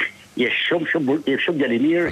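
Speech only: a caller's voice coming through the studio telephone line, with a thin, narrow phone-line sound.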